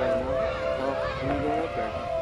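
A steady, held honking tone that steps up slightly in pitch at the start, with spectators talking underneath.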